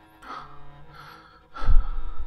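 Background music with long held notes.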